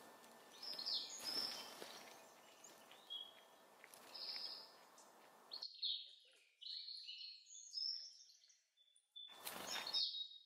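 Small songbirds giving short chirps and calls over a steady outdoor hiss. The hiss cuts off suddenly a little past halfway, leaving the chirps alone, and a short rush of noise comes near the end.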